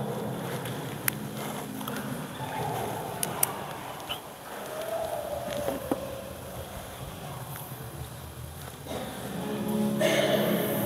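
A low room hum with a few sharp clicks and knocks of objects being handled, then music for the offertory hymn begins to rise near the end.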